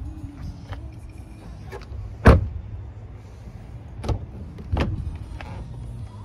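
Audi A3 car door being shut with a loud, sharp knock about two seconds in, followed by three lighter knocks and clicks of door handling.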